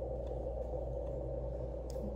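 Steady low background hum with no distinct events: room tone in a garage.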